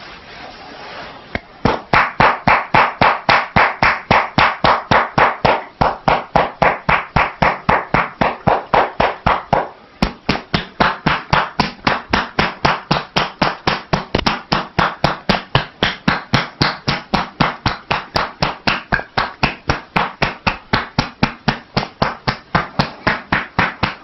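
A massage therapist's hands striking a seated woman's shoulders and upper back in fast percussive tapping (kōdahō), about four strikes a second. It starts after a quiet first second or so and breaks off briefly twice.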